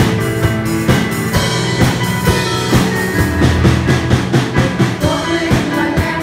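Live band instrumental break in a hymn: a drum kit keeping a steady beat with guitar and other instruments. The women's voices come back in near the end.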